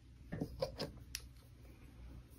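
A few quiet, short clicks and taps, about four in quick succession in the first second, over a faint low hum.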